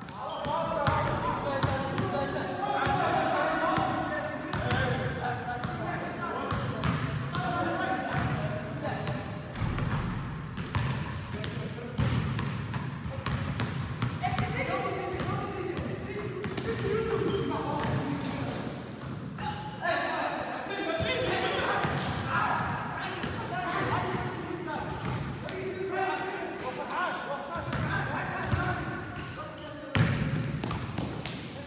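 A basketball bouncing and dribbling on a gym floor among indistinct shouts and chatter from players, in a reverberant gymnasium.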